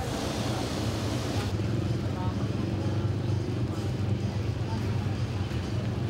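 A motor vehicle engine running steadily with a low hum, under the voices of a crowd. A higher hiss drops away about a second and a half in.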